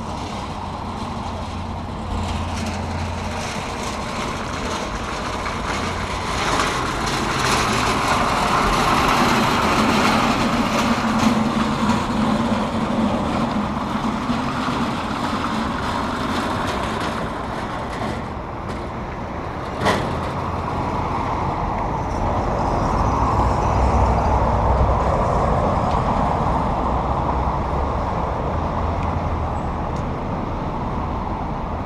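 Street traffic going by: a steady wash of vehicle noise swells and fades twice, with a heavier vehicle's engine hum through the middle stretch. A single sharp click comes about twenty seconds in.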